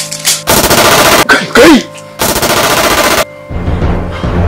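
Automatic rifle fire in two long bursts of rapid shots, the second following the first almost at once.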